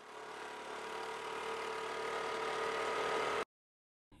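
A motor vehicle's engine running steadily, swelling gradually louder over about three seconds, then cut off abruptly.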